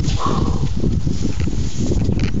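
Wind buffeting the microphone: a loud, irregular low rumble with no clear break.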